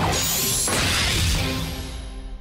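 Cartoon power-suit transformation sound effect: a loud whooshing swell with high sparkling tones sliding downward, mixed with the show's music, fading over the second half.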